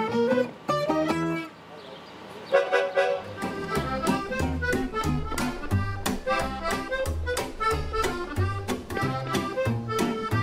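Acoustic gypsy-swing trio of accordion, acoustic guitar and upright double bass playing. One phrase ends in the first second and a half, there is a short quiet break, and a new tune starts about two and a half seconds in, with the guitar and bass keeping a steady beat under the accordion melody.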